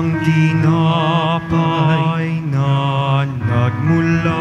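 Offertory hymn at Mass: a singing voice with strong vibrato moving from note to note over sustained low accompanying chords.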